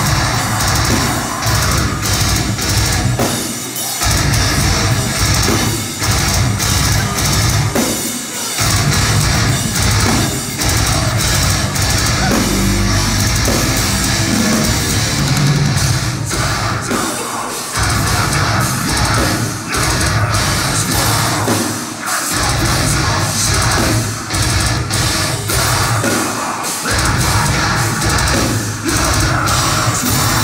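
Deathcore band playing live at full volume: heavy distorted electric guitars, bass and a pounding drum kit, with screamed vocals over the top. The wall of sound breaks off for a split second several times, as the band hits short stops.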